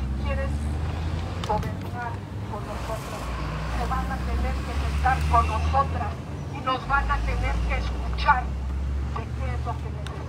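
A woman's voice amplified through a handheld megaphone, addressing a crowd in Spanish, over a steady low rumble.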